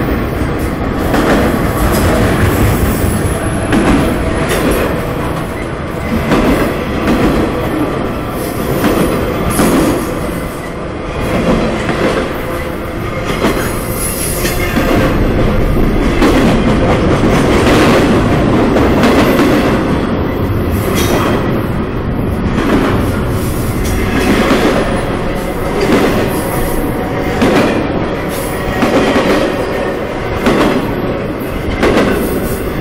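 Freight cars, autoracks and then container well cars, rolling past at close range: a loud steady rumble of steel wheels on rail, with repeated clicks every second or two as wheel sets cross rail joints.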